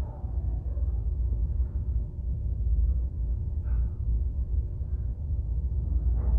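A low, steady rumble, with a few faint brief sounds above it about halfway through.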